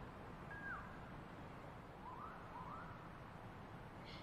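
Faint bird calls over a low hiss: one falling call, then two short rising calls about two seconds in.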